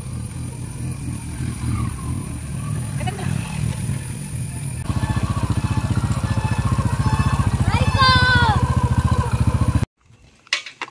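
A small Honda motorcycle's engine running at low speed as it is ridden, with a steady low pulsing that grows louder about halfway through. A short voice call comes in near the end.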